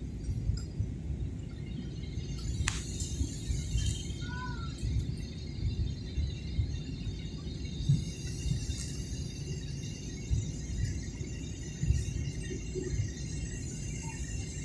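Jet airliner cabin noise during descent: a steady low rumble of engines and airflow, with a faint high whine.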